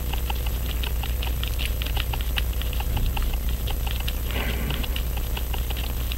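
Rapid, irregular light clicking as the crown of a Waltham Model 1892 pocket watch is turned to set the hands, with a brief rubbing sound a little past the middle. A steady low hum runs underneath.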